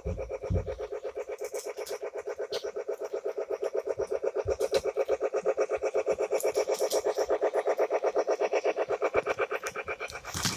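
Toy train running round its track, making a steady rhythmic buzz of about eight pulses a second. A few low bumps near the start come from the phone being handled.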